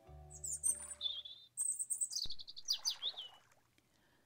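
Songbirds chirping, a quick run of high chirps and trills, over the last sustained notes of soft music that fade out in the first second and a half.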